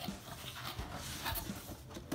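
Cardboard box flaps being pulled open and handled, a run of soft, irregular scraping rustles.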